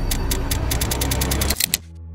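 Soundtrack sound design: fast, even ticking over a low bass drone, both cutting off suddenly near the end.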